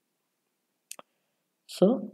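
Near silence broken by one short, sharp click about a second in.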